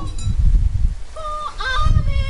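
Heavy rain and wind buffeting the microphone in a low, loud rumble after the band's music stops at the start. In the second half a short pitched sound is heard, a held tone and then a quick upward slide.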